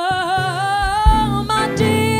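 A woman singing long held notes with vibrato, wordless or on an open vowel, over instrumental accompaniment. The pitch glides up slightly, then moves to a new sustained note about a second in.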